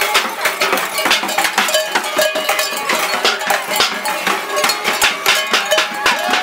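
Many metal bells clanging and jangling irregularly, struck many times a second with a ringing tail, as the wearers move and dance.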